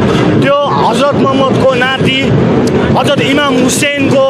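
A man's voice shouting loudly in short, rising-and-falling phrases, over the steady noise of a crowd in the street.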